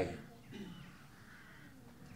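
A man's voice finishes a word, then a pause with only faint background, broken by a brief faint sound about half a second in.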